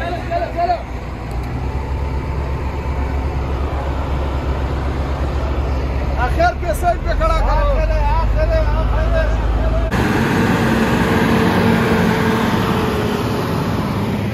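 A heavy vehicle's engine running with a steady deep rumble, with men's voices briefly near the start and again about six seconds in. About ten seconds in, the sound changes abruptly to the louder engine and road noise of a moving vehicle.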